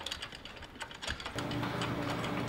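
Metal drying-rack trolley rattling as it is pushed over a road surface: a quick, irregular clatter of small clicks from its frame and casters. Background music comes in about halfway through.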